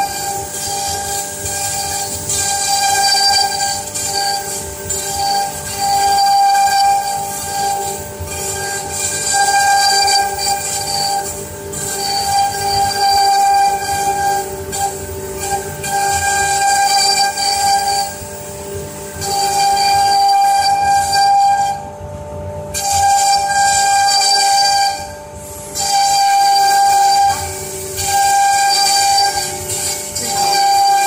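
Two CNC router spindles running at high speed with a steady high whine, their bits cutting into wood board as they carve relief patterns. The cutting noise rises and falls every couple of seconds as the heads move through the wood.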